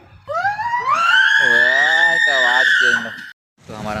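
A person screaming: one long high-pitched cry that rises in pitch, is held for about two seconds, and cuts off abruptly near the end. Other voices talk underneath.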